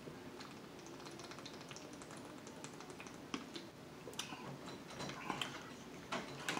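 Thin plastic water bottle crackling and clicking in the hand as it is drunk from and handled, with a scatter of small, sharp clicks that come thicker and louder from about three seconds in.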